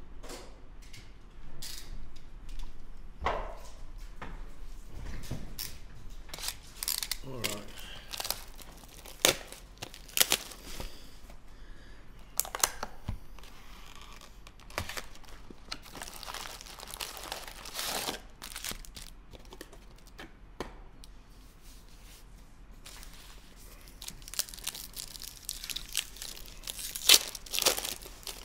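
Plastic shrink-wrap crinkling and tearing as a sealed trading card box is unwrapped and opened, with irregular clicks and rustles from the cardboard box and foil card packs being handled.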